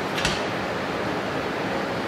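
Steady hiss of background room noise with no speech, and one faint short click just after the start.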